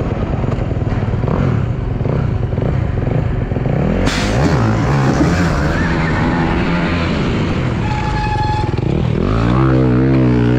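Dirt bike racing heard on a helmet camera: a motorcycle engine runs steadily under wind and track noise, with a sudden louder rush of noise about four seconds in as the riders get under way. The rider crashes in the first turn near the end, his front brake still faulty.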